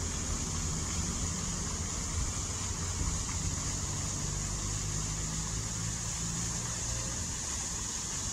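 Steady running of a small radio-controlled boat's motor, a low hum with a constant high whine, over the wash of water.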